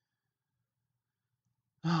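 Near silence, a pause in a man's talk, then his voice comes in near the end with a sighed 'Oh'.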